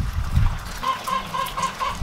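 Chicken clucking: a quick, even run of short clucks, about six a second, starting about a second in.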